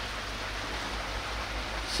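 Steady, even rush of running water, with a faint low hum underneath.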